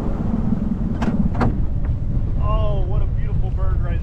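Small boat outboard motor running at low speed under a steady rumble of wind on the microphone, with two sharp knocks about a second in. A voice briefly near the end.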